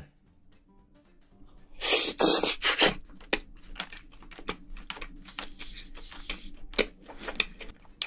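Close-miked mouth sounds of a person eating spicy braised seafood. There is a loud slurp about two seconds in, then a run of short, sharp wet clicks and smacks from chewing.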